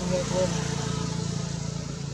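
A motor vehicle's engine running with a steady low hum, over voices talking at the start.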